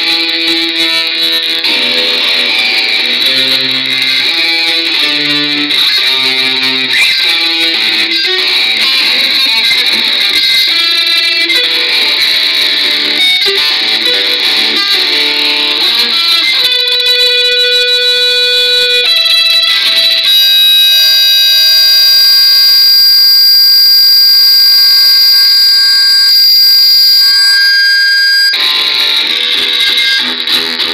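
Metal song, instrumental passage led by guitar. A melodic line of quickly changing notes gives way about halfway through to long held notes that ring out near the end, before the faster line comes back.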